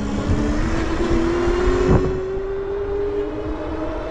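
Electric bike hub motor whining at full throttle, the whine rising slowly in pitch as the bike gathers speed, over a steady rushing noise of wind and fat tyres on concrete. A single bump about two seconds in.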